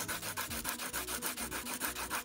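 Coloured pencil scribbling back and forth on lined notepad paper, a scratchy rubbing made of quick, evenly repeated strokes.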